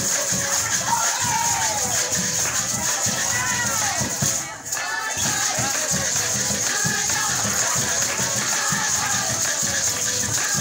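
Live Venezuelan Christmas parranda music: a violin, a small four-string guitar (cuatro) and a hand-beaten drum, with maracas shaken steadily throughout. The sound drops out briefly about halfway through.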